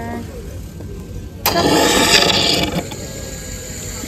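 Automatic coffee machine starting a drink after a touchscreen selection: a sudden loud rushing noise begins about a second and a half in and lasts just over a second, then the machine runs more quietly as it dispenses into a cup.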